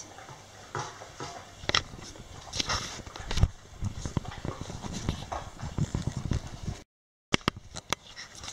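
A large dog eating off a tile floor: irregular licking and chewing noises with sharp clicks. The sound cuts out briefly near the end.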